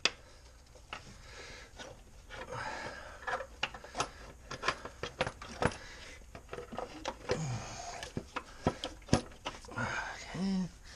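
Scattered clicks, knocks and clinks of a Ford 5.4 3V valve cover being wiggled and pried loose by hand in the engine bay, the sharpest knocks about a second in, around four to six seconds, and near nine seconds.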